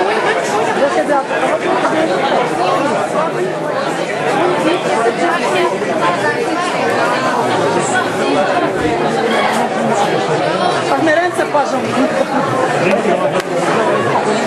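Crowd chatter: many voices talking over one another at a steady level in a large hall, with no one voice clear enough to follow.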